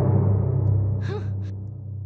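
The low rumble of a dramatic drum hit on the soundtrack dying away, with a short gasp about a second in.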